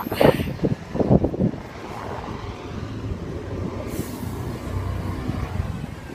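A motor vehicle going past: a steady low rumble with road hiss that swells near the end. A few short knocks and rustles come in the first second or so.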